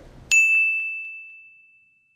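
A single clear, bell-like metallic ding, struck about a third of a second in, ringing on one high tone and fading away over about a second and a half.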